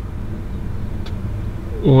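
Steady low rumble and hum with no sharp events.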